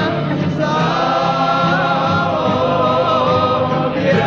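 Cape Malay choir singing a Dutch-language song: a male lead voice holds long, ornamented, wavering notes over the choir's sustained voices. There is a short break about half a second in, where a new phrase begins.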